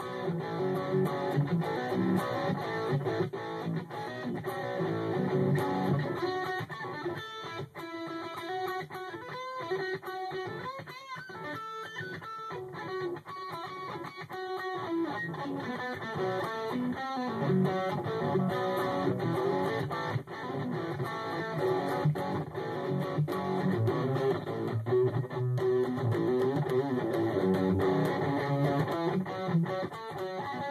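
Electric guitar in drop-B tuning played through a Peavey Vypyr 30 amp, heavy metal riffs picked continuously. The low, chugging riffing thins out in the middle into a lighter passage of higher notes, then the heavy riffing comes back.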